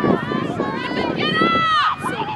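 Several voices shouting and calling across a soccer field, overlapping and without clear words, with one long high-pitched call near the end.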